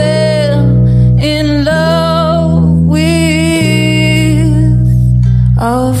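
A woman singing a gentle song to strummed ukulele, long held notes over steady chords; the song ends just before the end.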